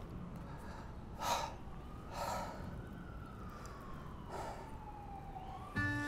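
Quiet outdoor air with a few short breathy exhalations and a faint distant siren that rises, then slowly falls away. Music comes in just at the end.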